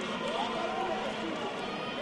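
Football stadium crowd ambience: a steady murmur of many voices with faint distant shouts in the first second.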